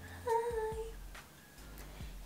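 A woman's short, high-pitched hum with closed lips, lasting about half a second and falling slightly in pitch, followed by a couple of faint clicks.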